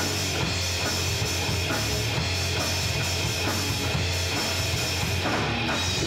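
Live rock band playing an instrumental passage with no singing: a pounding drum kit, electric guitar and bass guitar, with a heavy, steady low end.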